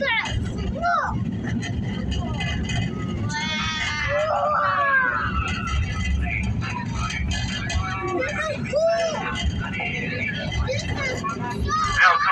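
Small-gauge ride train's passenger car rolling along its track: a steady low rumble, with people's voices over it.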